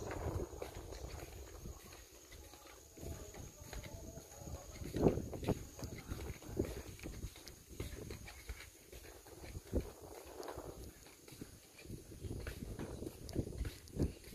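Footsteps on a tiled walkway: irregular knocks and scuffs roughly a second apart, the loudest about five seconds in, over a low rumble from the phone being handled.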